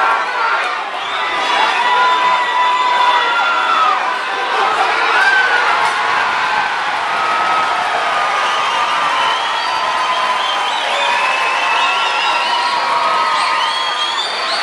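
Crowd cheering and shouting, with many separate shouts and whoops rising and falling over a steady roar.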